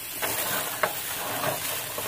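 Ground meat crumbles sizzling in a skillet while a slotted spatula stirs them, scraping and tapping against the pan, with one sharper knock a little under a second in.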